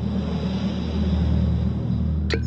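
A low rumbling sound effect with a rushing swell that peaks about a second and a half in, over a steady low drone of held notes in the background music.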